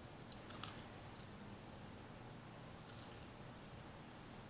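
Faint crisp clicks of chewing fried, pancake-battered fish: a short cluster about half a second in and a weaker one near three seconds, over quiet room tone.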